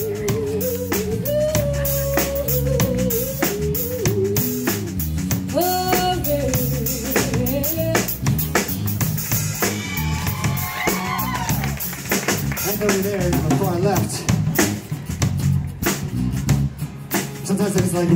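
A woman singing a short solo vocal showcase over a live rock band, with drum kit, bass guitar and electric guitar keeping up a steady groove underneath. Her voice slides and bends in pitch, climbing to higher notes around the middle.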